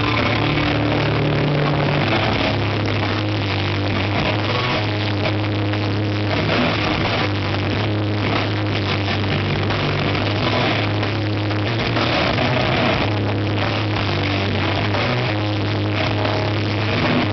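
Death metal band playing live, with heavily distorted guitars and bass holding long, low notes under a dense wash of distortion.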